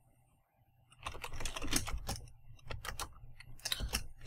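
Computer keyboard typing: after a brief near-silent pause, a quick, irregular run of keystrokes starts about a second in.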